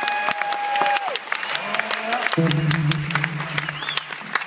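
Audience applause with a long whistle in the first second. Just past halfway, an electric bass guitar starts holding a low note under the clapping.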